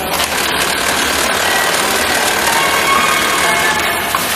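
Steady mechanical din of industrial sewing machines running on a garment-factory floor.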